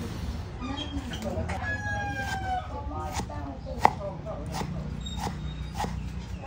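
A cleaver chops pickled spinach on a wooden chopping board in single sharp strikes about a second apart, through the second half. A rooster crows once, for about a second, about one and a half seconds in.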